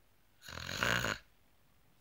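A single snore from a voice imitating a sleeper's snoring. It starts about half a second in and lasts under a second.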